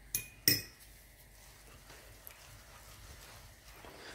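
A metal spoon set down on a small ceramic saucer, clinking twice in quick succession, the two clinks about a third of a second apart and ringing briefly.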